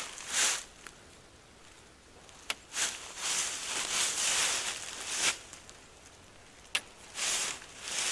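Nylon mesh of a hammock bug net rustling as it is handled and pulled along a paracord ridge line, in several bursts with quiet gaps between, and three sharp clicks.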